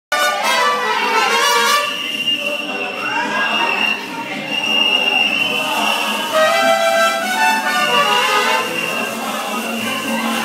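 Music playing continuously, with people's voices mixed in.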